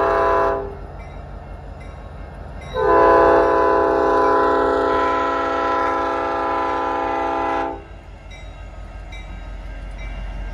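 Multi-chime air horn of an EMD SD70 diesel locomotive (CN paint, IC 1008) leading a freight train, sounded for a grade crossing. One blast cuts off about half a second in, then a second long blast of about five seconds starts about three seconds in. The low rumble of the passing locomotives runs underneath.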